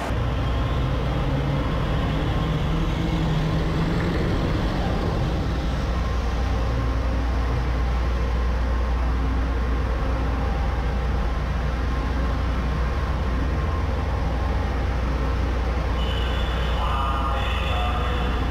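Amphibious vehicle under way at sea: its engine drones deep and steady under the rush of churning water from its wake.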